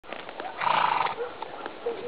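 Horses walking on a dirt track, with scattered hoof knocks and a brief loud burst of noise about half a second in.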